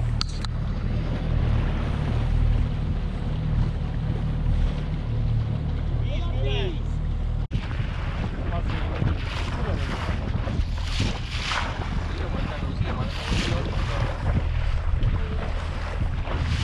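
A small fishing boat's motor running steadily at slow trolling speed, with wind buffeting the microphone and sea water washing around the hull. In the second half the wind comes in repeated gusts.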